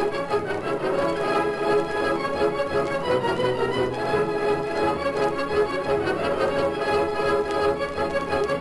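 Orchestral theme music with the strings to the fore, playing at a steady full level.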